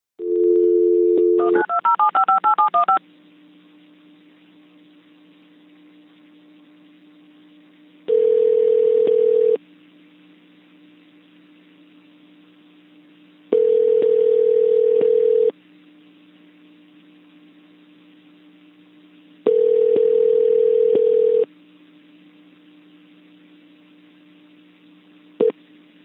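Telephone line tones: a two-tone dial tone, then a rapid string of touch-tone (DTMF) digits being dialed. Then a ringback tone rings three times, about two seconds on and four seconds off, over a faint steady line hum, with a short click just before the call connects.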